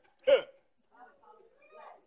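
A single short vocal exclamation, a sharp yelp that falls steeply in pitch, followed by faint scattered voices.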